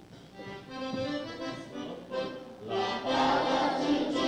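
Accordion playing a lively song tune, swelling louder and fuller about three seconds in.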